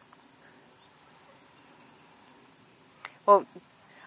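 Faint, steady high-pitched drone of crickets or similar insects, two thin tones holding unchanged. A voice says one word near the end.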